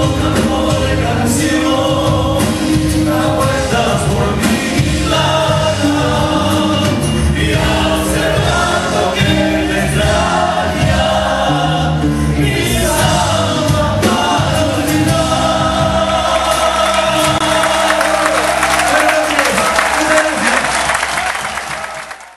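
Live Argentine zamba: two male voices singing together over nylon-string acoustic guitar, electric guitar, bass and drums. The song draws to its close, and the sound fades out at the very end.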